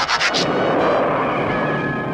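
Cartoon sound effect of cars speeding off at full throttle, a steady engine-and-rush noise, over the cartoon's background music.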